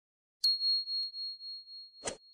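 A bell "ding" sound effect for the notification-bell icon of a subscribe-button animation. It is one high ringing tone that begins about half a second in and fades out with a slight waver over about a second and a half.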